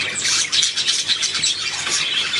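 Budgerigar chattering: a fast, unbroken run of short high chirps and clicks.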